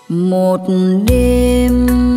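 A live band starting the instrumental intro of a slow song: a held melody line slides up into its notes, and about a second in the bass and drum hits come in.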